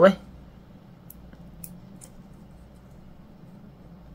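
A 3D-printed plastic square with honeycomb infill flexing under hand bending, giving a few faint ticks and creaks over a low steady room hum.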